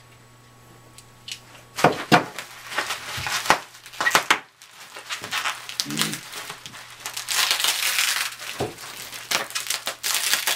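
Plastic bubble wrap crinkling and crackling in irregular bursts as hands struggle to work the tape off it, starting about two seconds in.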